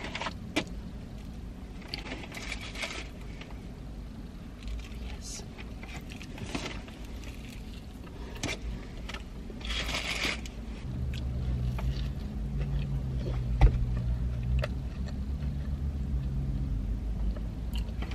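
Close-up chewing of a burger topped with chips, with scattered short rustling and mouth noises. About eleven seconds in, a steady low vehicle engine rumble comes in and keeps going, becoming the loudest sound.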